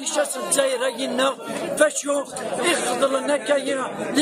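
A man talking, with the chatter of a crowd behind him.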